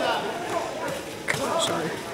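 Background voices of people talking in a large gym hall, with a short sharp knock about 1.3 seconds in.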